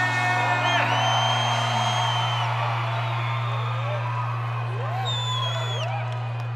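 Live concert sound through the PA: a steady low bass note is held under music that fades out, while the crowd whoops and gives two long high whistles, the first about a second in and the second near the end.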